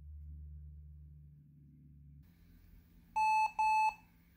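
Lenovo ThinkPad T440p's built-in beeper giving two short, identical beeps near the end, its boot-time fan error warning: the cooling fan has died and the laptop refuses to start.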